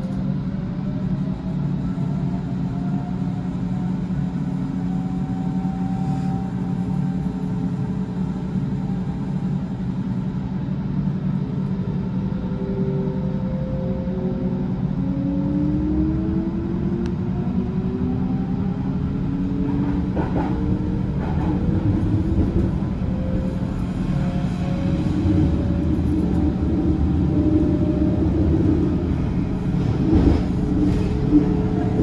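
Electric Berlin S-Bahn train pulling away, its traction motors whining in several tones that rise in pitch as it gathers speed, over a steady low running rumble that grows a little louder near the end.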